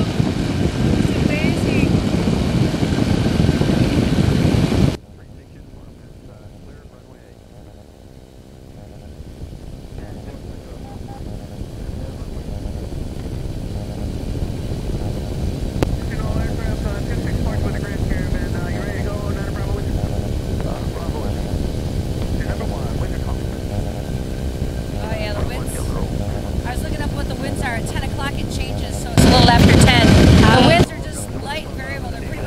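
Engine and propeller drone of an ultralight weight-shift trike in flight, with air rushing past the microphone. The loud rush cuts off suddenly about five seconds in, leaving a much quieter steady drone that slowly builds back up and then holds level, before a loud burst again near the end.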